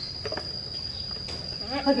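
An insect chirring in one steady, unbroken high-pitched tone, with a woman's voice coming in near the end.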